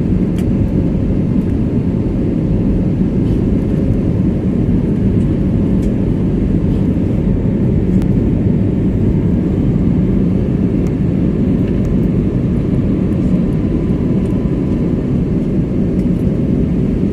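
Passenger aircraft cabin noise in flight: a steady low rumble of engines and rushing air, with a faint steady hum above it.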